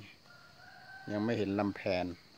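A man speaking Thai in the second half. Just before he speaks, a faint, drawn-out bird call is held at one pitch in the background.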